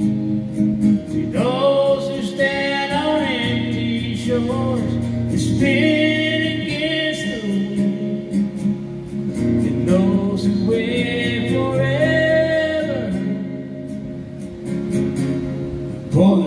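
A man singing a slow country ballad in long, drawn-out phrases over his own strummed acoustic guitar.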